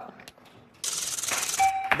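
Game-show correct-answer sound effect: a bright, shimmering chime starts suddenly about a second in, with a short held tone just before it ends.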